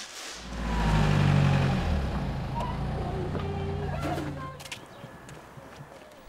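A motor vehicle's engine rumbling past, swelling in the first second and fading away after about four and a half seconds.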